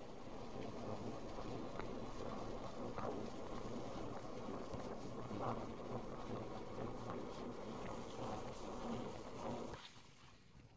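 Steady droning road and engine noise of a car driving, heard inside the cabin. It cuts off suddenly near the end.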